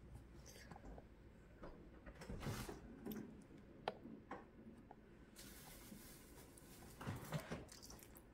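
Faint kitchen handling sounds as milk is spooned onto cookie dough in a stainless steel bowl: scattered small clicks and knocks, with a sharp click about four seconds in and a short cluster of knocks near the end.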